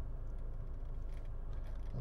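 Steady low hum inside a Range Rover Evoque's cabin, with no distinct clicks or music standing out.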